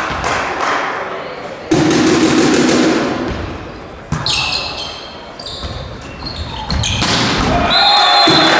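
Indoor volleyball rally in a reverberant sports hall: sharp ball hits, players' shoes squeaking on the court floor and players' shouts, with a referee's whistle near the end as the point finishes.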